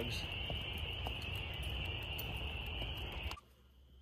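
A dense frog chorus calling in one steady, high-pitched band, over a low rumble of distant highway traffic. Both cut off suddenly a little over three seconds in.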